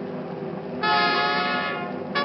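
Orchestral music: a sustained full chord, with a bright brass chord entering about a second in and held for nearly a second.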